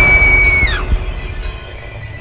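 A shrill, high shriek held at one pitch for most of a second, then sliding down and cutting off, over a low, droning horror score that carries on more quietly afterwards.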